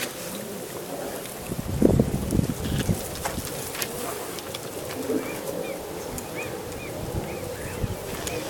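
Open-air ambience with a small bird chirping several short, repeated notes in the second half. A few low rumbles come about two seconds in.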